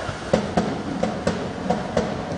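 A supporters' drum in the stands beaten in quick pairs of beats, three pairs across two seconds, over the stadium's general crowd noise.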